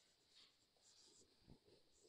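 Faint scratching and squeaking of a marker writing on a whiteboard in short strokes, with a soft thump about one and a half seconds in.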